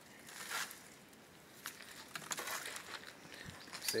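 Faint scattered rustles and light clicks of a phone being handled and turned around, over a quiet outdoor background.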